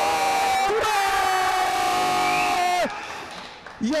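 A male football commentator's long, drawn-out goal shout, held on one steady pitch for nearly three seconds before cutting off, calling a goal. After it, quieter stadium background noise.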